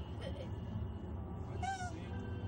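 A single short meow-like cry, rising then falling in pitch, near the end, over the steady low rumble of a car cabin on the move.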